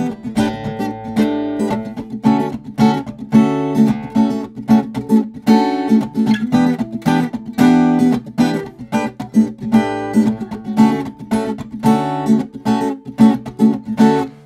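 Acoustic guitar in drop D tuning strummed up and down with the fingers in a steady, rhythmic disco-style groove. The fretting hand vamps: it mutes the strings for short choked strums and presses down to let chords ring out.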